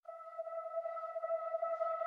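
A single sustained electronic note, one steady pitch with a few faint overtones, slowly swelling in loudness: the opening note of a pop song's intro.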